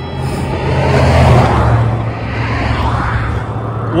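A motor vehicle passing the cyclist: tyre and engine noise swells to a peak about a second in, then fades away over the next few seconds.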